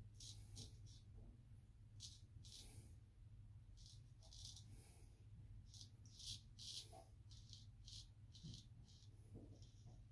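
Straight razor shaving lathered stubble in short strokes: a run of faint, brief scrapes, often two or three in quick succession.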